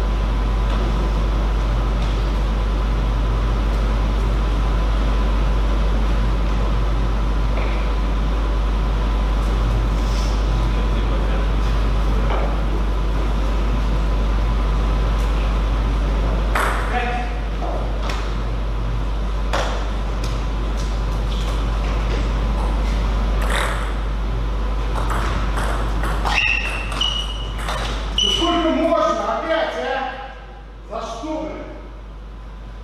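Table tennis rally in a hall: sharp clicks of a celluloid ball on paddles and table, spaced a second or more apart, over the second half after steady room noise. The rally ends the match's deciding game, and a man's voice follows near the end.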